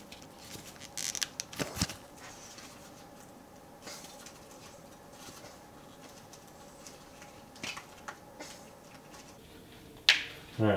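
Hard plastic parts of a Dye i5 paintball goggle being handled as its lens clip is pushed free: a few light clicks and scrapes about one to two seconds in, then faint room tone with a couple of soft ticks near the end.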